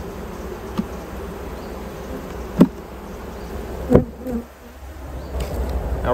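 Caucasian/Carniolan honey bees buzzing steadily at an open hive, with three sharp knocks as the hive is closed up. The second and third knocks are the loudest.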